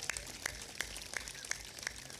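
Sparse hand clapping from a few people, short sharp claps at about three a second.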